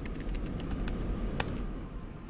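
Laptop keys being tapped: a string of light, irregular clicks, with one sharper click about a second and a half in.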